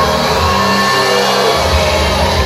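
Live synth-pop band playing through a large hall's PA: electronic keyboards with electric guitar over a steady bass pulse.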